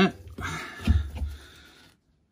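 Handling noise as a cloth tape measure is moved inside a stainless steel washing machine drum: a soft rustle with a low bump about a second in, fading out toward the end.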